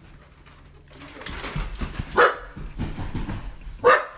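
A small dog barking twice, two short sharp barks about a second and a half apart, over some low shuffling sounds.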